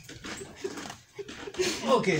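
Men laughing, ending in a loud, high squeal of laughter that falls in pitch near the end.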